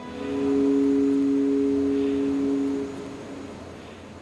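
Background music: a sustained low two-note chord swells in, is held for about three seconds, then fades away.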